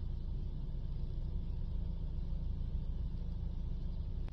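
Steady low rumble of background noise with no other event standing out.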